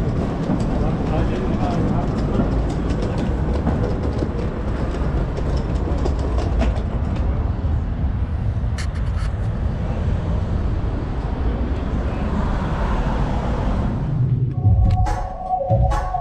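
Loud, steady low rumbling noise of a city street at night. Near the end it gives way to music with a beat.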